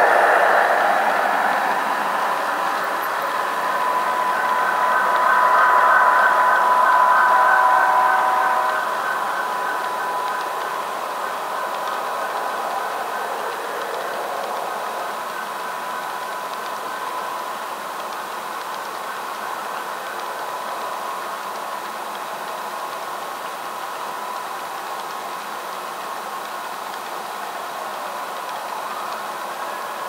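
Model train rolling past close by: a Union Pacific diesel locomotive followed by a long string of freight cars running along the track, with a steady whine. Loudest as the locomotive goes by in the first several seconds, then quieter and steady as the cars pass.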